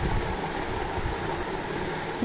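A steady low mechanical rumble with hiss, and no speech.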